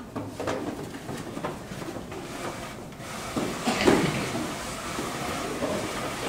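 Knocks, scrapes and footsteps as a bench and stage props are carried off a stage, with a louder thump about four seconds in.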